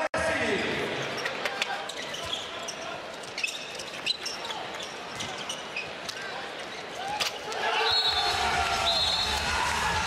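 Handball bouncing and players moving on an indoor court, with arena crowd noise behind. There is a sharp smack about seven seconds in, after which the crowd noise swells as a goal is scored.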